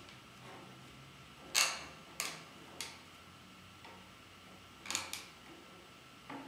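Sharp wooden clicks and knocks from a laser-cut wooden laptop stand being handled and set back down on a table: the loudest about a second and a half in, two smaller ones soon after, and a quick pair near the end.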